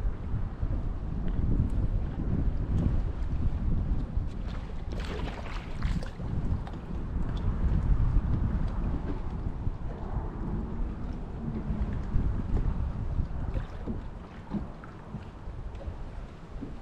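Wind buffeting the microphone on an open boat, a steady low rumble that rises and falls, with a brief cluster of sharp rattling clicks about five seconds in.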